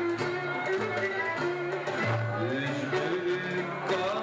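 Live traditional folk music: ouds plucked in a running melody, with a man singing into a microphone.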